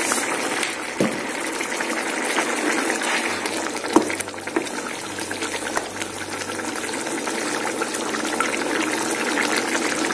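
Egg and drumstick curry simmering in a pan, a steady bubbling, with a light click about a second in and another about four seconds in.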